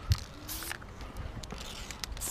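Aerosol spray-paint can hissing in two short bursts as paint goes onto a concrete ledge, the second fainter. A dull thump comes just after the start and is the loudest sound.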